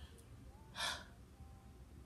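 A woman's single short, sharp intake of breath about a second in, during a pause in her talking; otherwise near quiet.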